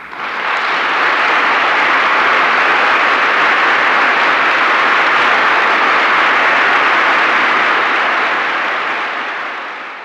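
Audience applauding, swelling within the first second, holding steady, then dying away near the end.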